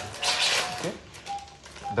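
A man saying 'okay' over operating-room background noise, with short, faint, steady-pitched electronic beeps recurring a few times.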